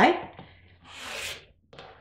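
Rotary cutter blade rolling through a stack of fabric layers along the edge of an acrylic quilting template: one cutting stroke about a second in, lasting under a second.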